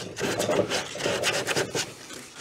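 Hand sanding along the cut edge of a wooden cabinet panel: quick, repeated back-and-forth strokes of abrasive on wood, tidying the freshly trimmed edge.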